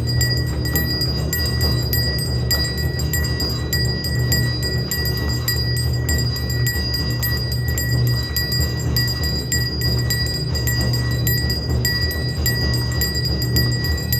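Temple bells rung rapidly and without pause during aarti, their ringing tones held steady by the quick strikes, over a dense, continuous low drumming.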